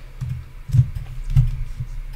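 Computer keyboard being typed on: a few separate keystrokes with dull knocks, the two loudest a little under a second in and about a second and a half in.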